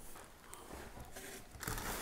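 Faint rustling and crinkling of packing paper as a hand digs into a cardboard box, a little louder near the end.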